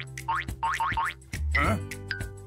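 Cartoon background music with four quick rising, boing-like comedy sound effects in the first second, followed by a short vocal noise from the animated character.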